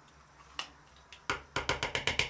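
A metal spoon tapping against a green plastic bowl as soft cream cheese is knocked off it into grated crab sticks: a couple of single taps around the middle, then a quick run of about five near the end.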